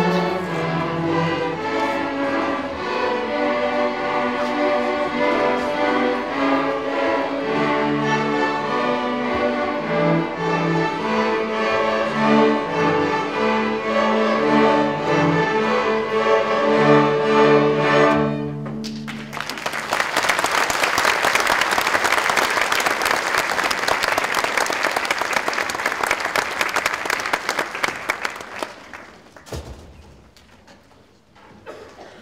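Student string orchestra of violins and cellos playing the closing bars of a piece, ending on a held chord about 18 seconds in. Audience applause follows for about ten seconds, dying away near the end.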